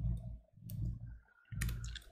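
A few clicks from working a computer, one about two-thirds of a second in and several close together near the end, over a low steady hum.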